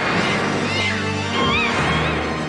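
Spooky background music with low held notes. A cat's yowl rises and falls over it in the middle.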